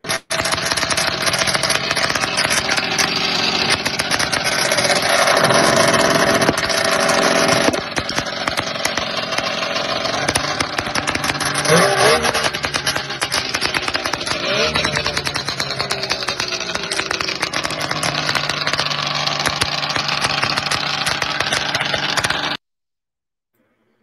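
1973 Polaris TX Starfire 440 snowmobile's two-stroke twin engine running, louder for the first several seconds and then steady. The sound stops suddenly near the end.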